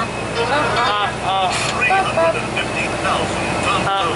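Steady low drone of a bus running, heard from inside the cabin, under bursts of high-pitched voices.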